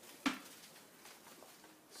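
Bucket of ice water dumped over a person's head: a sudden splash of water and ice about a quarter of a second in, dying away quickly.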